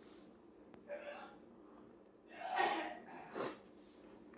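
A man gasping hard in distress from the burn of a Trinidad Scorpion Butch T chilli: a short gasp about a second in, then a long loud gasp a little after two seconds and a shorter one just after.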